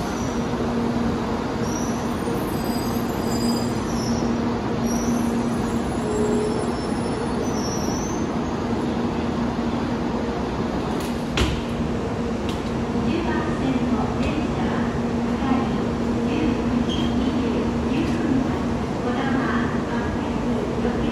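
A stationary 700-series Rail Star shinkansen humming steadily at a station platform, its onboard equipment holding one constant low tone over a bed of platform noise. There is a single sharp knock about eleven seconds in, and faint voices in the second half.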